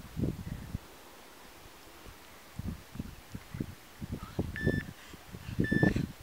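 Two short high electronic interval-timer beeps about a second apart near the end, counting down the close of a 40-second sprint interval. Under them, low muffled thuds and rustling from a man sprinting on sand.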